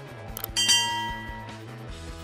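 A click followed by a bright bell-like ding sound effect, struck about half a second in and ringing out over about a second, over quiet background music.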